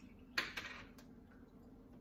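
Plastic screw lid coming off a jar of cleaning paste: one short click-scrape about half a second in, then a faint tick about a second in, against a quiet room.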